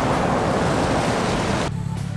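Steady wind rushing over the microphone, mixed with road traffic noise. It cuts off abruptly near the end.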